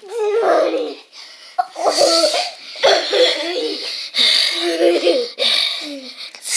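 Laughter in repeated short bursts, with breathy outbursts between them.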